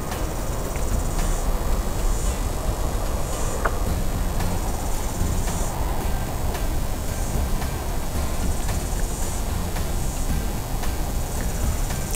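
Outdoor insects chirping high-pitched in repeated bursts of about a second, over a steady low rumble.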